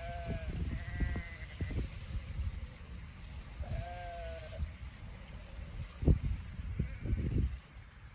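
Sheep bleating from a flock of ewes and lambs: three clear bleats in the first half and a faint one near the end, over a low gusty rumble of wind on the microphone that peaks about six seconds in.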